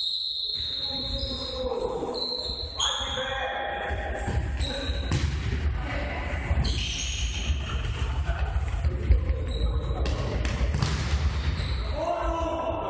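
Indoor futsal being played: the ball being kicked and bouncing on a hard court floor, with sneakers squeaking and players shouting, all echoing in a large sports hall.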